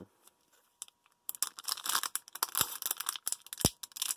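Foil wrapper of a sealed trading-card pack crinkling and tearing as it is pulled open by hand. It starts about a second in, with several sharp crackles.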